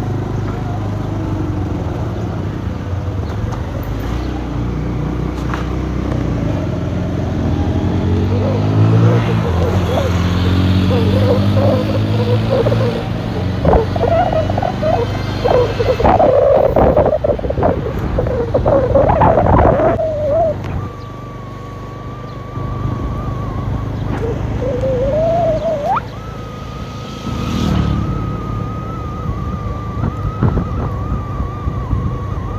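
Vehicle engine and road noise while travelling along a road, the engine pitch climbing as it speeds up about a third of the way in. A steady high tone sets in about two-thirds through and steps up in pitch near the end.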